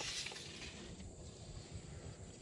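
Faint steady hiss of background noise with no distinct event.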